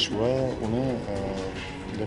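A man's voice, with drawn-out, wavering sounds in the first second that trail off, over soft background music.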